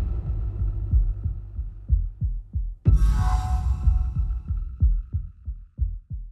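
Tense background music built on a low heartbeat-like pulse that quickens toward the end, with a sudden hit and a ringing tone about three seconds in.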